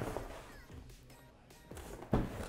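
Cardboard shipping box being handled on a table: faint rustling of the flaps and a few light knocks as the box is shifted, the clearest near the end.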